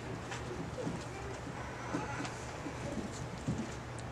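Dry-erase marker squeaking and scratching on a whiteboard as words are written, faint, over a steady low electrical hum.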